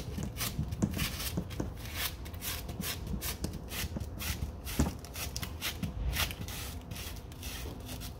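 Wide clear tape dabbed again and again onto a carpeted car trunk mat to lift pet hair: an irregular run of short rubbing, sticky crackles as the tape is pressed down and pulled away.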